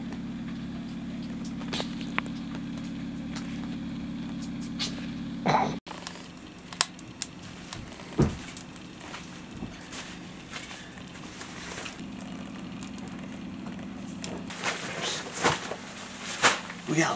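A steady low hum with several even tones that stops abruptly about six seconds in, followed by scattered light clicks and knocks.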